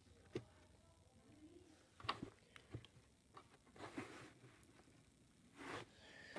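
Near silence with a few faint, short taps and clicks of small plastic toy figures being handled and set down, the sharpest about a third of a second in and a cluster around two to three seconds.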